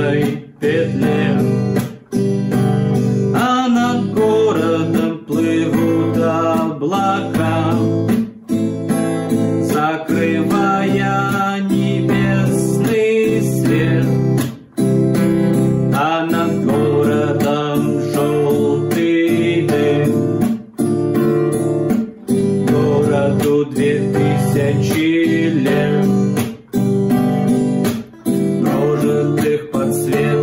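Nylon-string classical guitar strummed slowly through simple open chords in the beginner's pattern of down, up, muted down, up, with a man singing along.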